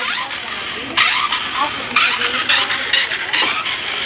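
Small battery-powered RC stunt car's electric drive motors running as it drives across a tiled floor, a steady noisy whine that gets louder about a second in.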